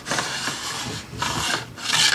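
Wooden-bodied fret end file scraping across the ends of the metal frets along the edge of a guitar neck. It makes two long filing strokes, and the second is louder.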